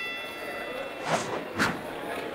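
Title-card transition sound effects: a bright ringing chime fading out, then two quick whooshes about half a second apart.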